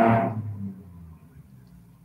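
A loud passing vehicle fades away over the first half-second or so, then only faint background noise is left.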